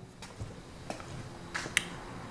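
A few faint, sharp clicks over quiet room tone, the sharpest about three-quarters of the way through.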